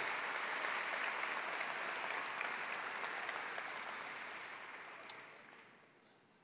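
Large audience applauding, the clapping steady at first and then dying away over the last two seconds.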